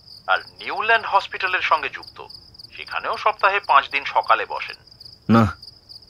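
Crickets trilling steadily under a voice speaking in two stretches, with a short word near the end.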